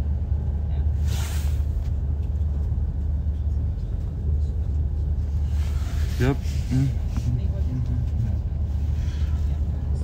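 Steady low rumble of an ICE high-speed train running at speed, heard from inside the passenger car. A brief hiss sweeps through about a second in.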